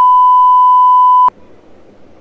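Loud, steady single-pitch test-tone beep, the broadcast 'technical difficulties' tone that marks the feed cutting out. It stops abruptly about a second in, leaving faint hiss.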